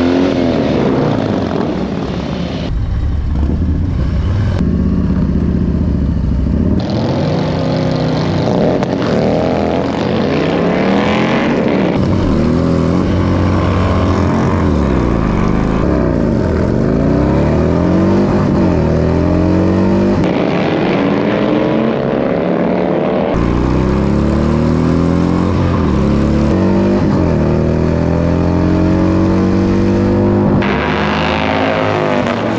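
Harley-Davidson Milwaukee-Eight V-twin bagger engines at full throttle on a drag-strip run. The revs climb and fall back again and again as the rider shifts up through the gears, and the sound jumps abruptly several times.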